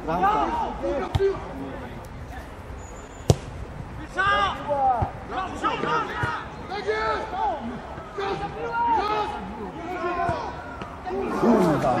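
Players and spectators shouting across an open football pitch during play, with one sharp thump of a football being kicked about three seconds in.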